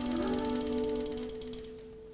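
Live acoustic jazz quartet: a held horn note dies away over quick, even cymbal taps, then the band drops to a brief hush near the end.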